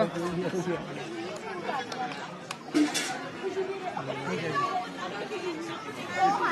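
Several people chattering at once, voices overlapping, with a short sharp noise about three seconds in.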